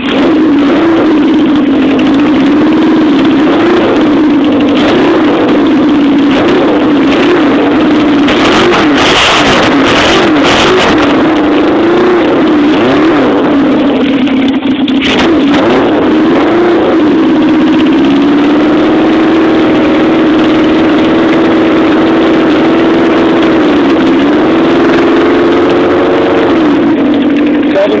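1975 Honda CB750's air-cooled inline-four engine running soon after a cold start, its note wavering up and down in small throttle swells through the first half, then steadier, with a dip and rise near the end. The engine is still a little cold-blooded and not yet settled to its warm idle.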